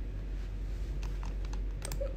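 Typing: a few scattered light clicks about half a second apart, bunched closer near the end, over a steady low hum.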